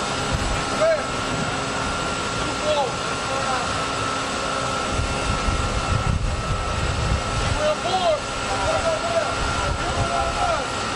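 Steady drone of shipboard machinery on a destroyer's deck, with a constant high whine running through it. Wind rumbles on the microphone for a few seconds in the middle, and brief distant voices call out now and then.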